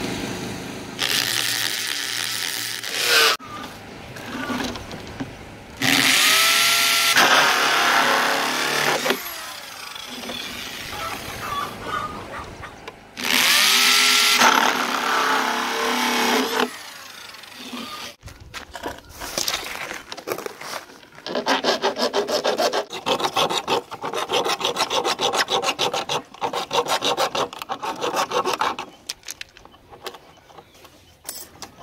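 Saw cutting PVC pipe in several bursts of strokes, the last one a long run of quick, even strokes.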